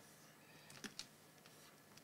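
Faint clicks from a computer keyboard, two close together about a second in, over low room hiss.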